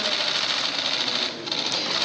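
Many camera shutters clicking rapidly and together in a dense, even clatter during a handshake photo opportunity, easing off briefly about halfway through.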